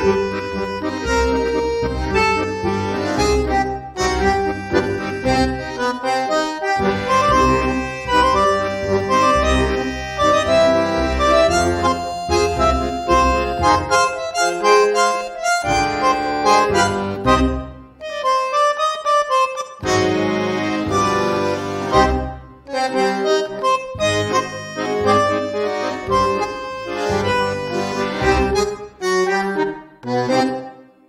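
Tango music led by a bandoneon, playing a rhythmic melody over low bass notes, with a few brief stops in the music.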